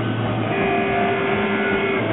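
Rock band playing live: a loud, dense wall of sustained electric guitar, the held chord changing about half a second in.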